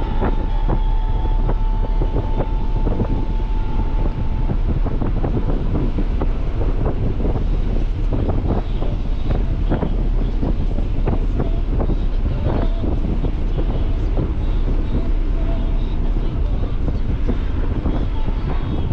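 Nissan 300ZX's V6 and the road and wind noise of the car driving along: a steady, heavy low rumble with irregular short knocks and buffets. A thin steady tone sounds over it for the first four seconds or so.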